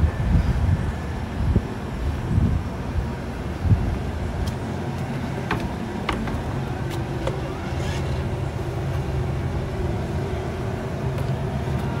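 A steady low mechanical hum that settles in about four seconds in, after gusty low rumbling from wind on the microphone, with a few light clicks in the middle.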